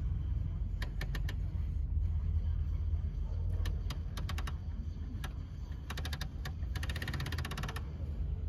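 Low, steady rumble of vehicles idling and creeping past, with scattered sharp clicks and a fast run of rapid clicks near the end.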